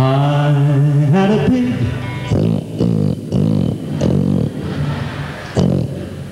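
Country band on stage: voices hold a sung chord that slides up and breaks off about a second and a half in. A quick run of short, choppy vocal syllables follows over the instruments.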